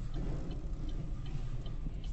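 A car's indicator clicking steadily, about three clicks a second, over a low rumble inside the car.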